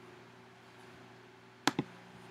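Two sharp clicks about a tenth of a second apart near the end, a computer mouse button pressed on the Terminal dock icon, over a faint steady hum.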